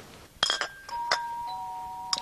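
Two-note ding-dong door chime: a higher note just before a second in, then a lower note about half a second later, both ringing on, after a short sharp click.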